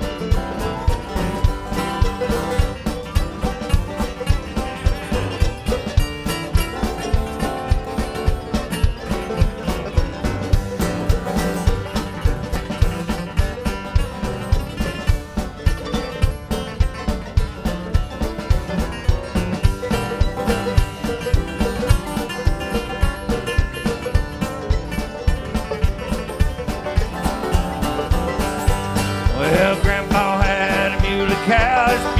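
Live bluegrass band playing an instrumental passage: banjo, acoustic guitars and upright bass over a drum kit keeping a steady, driving beat.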